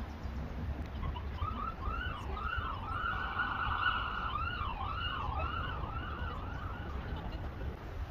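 Emergency vehicle siren sweeping up and down in quick repeated arcs, going into a faster warble about three seconds in, then back to the sweeps.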